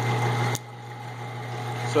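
A steady low electrical machine hum in the mill room, with a sharp click about half a second in, after which the rushing background noise drops away while the hum carries on.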